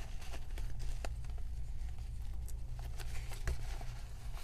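Paper cards and ephemera being handled and slid into a zippered wallet's pocket: scattered small clicks and soft rustles over a steady low hum.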